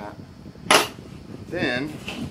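One sharp click or knock about a second in, from parts being handled on a tabletop during assembly, followed near the end by a brief hummed vocal sound.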